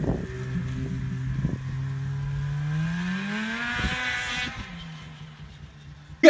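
A Polaris snowmobile with an exhaust can running: a steady engine note that rises as the rider revs it up about halfway through, then fades as the sled pulls away.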